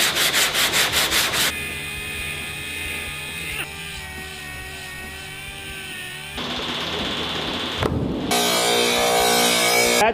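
Sandpaper rubbed back and forth on a car body panel in quick, even strokes, about five a second, which stop after a second and a half. After that comes a steady machine hum with several pitches and some hiss, which shifts in pitch now and then.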